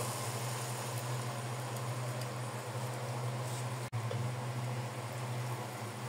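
Kitchen fan running with a steady low hum and an even hiss, broken by a momentary dropout about four seconds in.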